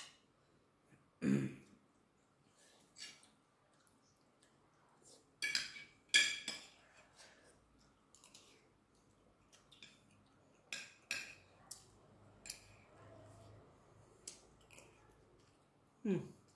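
Metal spoon and fork clicking and scraping on ceramic plates during a meal, in scattered sharp clinks, the loudest pair about six seconds in.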